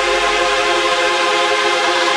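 Sustained synthesizer chord held without a beat in the breakdown of an electronic dance track, with the low bass fading out about a second in.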